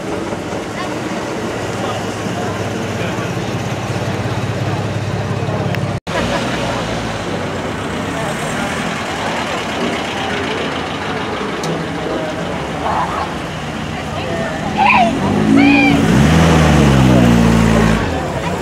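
Classic car engines running as the cars crawl past one after another, a steady low engine hum at first. Near the end a louder engine note climbs in pitch as a vintage open tourer pulls away, the loudest part, with voices around it.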